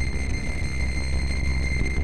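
Logo sound effect: a steady electronic static buzz with a low rumble underneath and a thin high whine on top.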